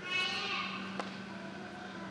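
A high-pitched, drawn-out voice that trails off within the first half second, then a single sharp click about a second in, over a steady low hum.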